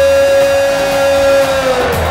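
A man's voice holding one long sung note over instrumental worship music, dipping slightly in pitch as it fades near the end.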